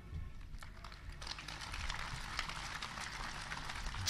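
An audience applauding, a dense patter of many hands clapping that sets in about a second in and holds steady.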